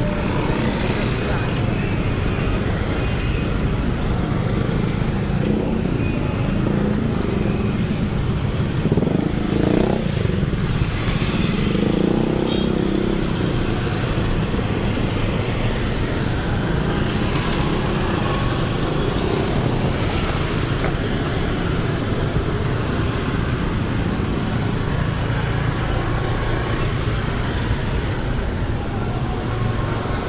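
Close-range street traffic: motorcycle and car engines running and passing in a steady low rumble, with one engine note rising about nine seconds in.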